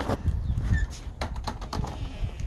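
Handling noise on a phone's microphone: scattered knocks and rubbing over a low rumble, with one brief high chirp partway through.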